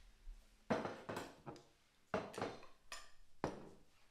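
About half a dozen knocks and clinks of small bowls and containers being picked up and set down on a kitchen countertop.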